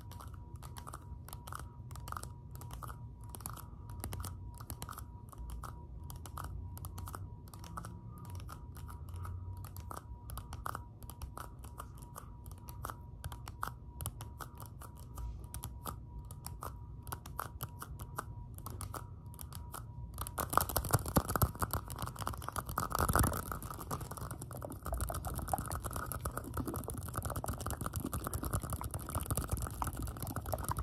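Rapid fingertip tapping and clicking on thin clear plastic cups held close to the microphone. About twenty seconds in it turns into louder, denser rubbing and crinkling of the plastic.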